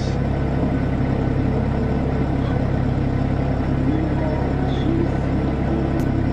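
Diesel van's engine and road noise heard from inside the cab while cruising: a steady low rumble.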